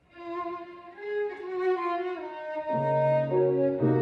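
Violin and grand piano playing classical music. The violin enters with a melodic line just after a brief silence, and the piano's lower chords join about two-thirds of the way through.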